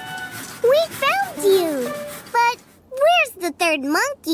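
Wordless cartoon monkey vocalizing: a string of short calls that swoop up and down in pitch, in several bursts with brief pauses, over light background music.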